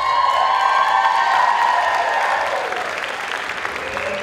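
Audience applauding and cheering at the end of a dance routine, with long held shouts over the clapping that trail off about three seconds in.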